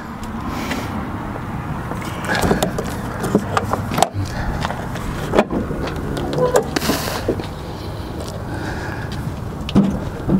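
Tilt hood of a semi-truck tractor being unlatched and swung open: a few scattered clicks and knocks from the hood latches and hood over a steady background hiss, with a brief rush about seven seconds in.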